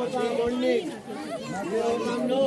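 People talking: close voices of more than one speaker chatting in a crowd.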